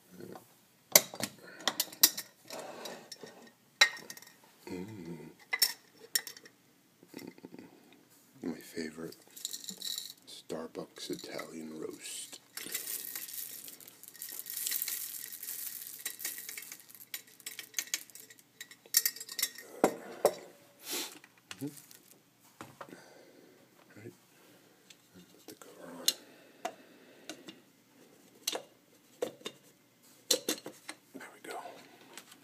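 Glass storage jars being handled, with sharp clinks and knocks of glass and lids. About halfway through, whole coffee beans are poured from a glass jar into an electric coffee grinder, a rattling hiss of a few seconds, followed by more knocks as the grinder is handled.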